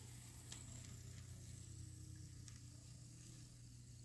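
Near silence: a faint steady hum with a faint wavering tone and a few soft ticks from a quiet-running Atlas Southern Pacific SD7 model locomotive and its cars rolling past.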